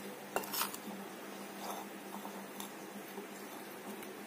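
Steel spoon stirring flour-coated cauliflower florets in a bowl, with a few light clinks and scrapes against the bowl. The loudest are grouped about half a second in, and fainter ticks follow now and then.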